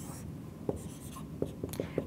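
Dry-erase marker writing on a whiteboard: a stroke at the start, then several short strokes with light taps of the tip as a new symbol is begun.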